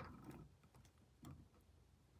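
Near silence, broken by a few faint clicks and a light tap a little past halfway: multimeter probe tips being set against the heater's wire terminals.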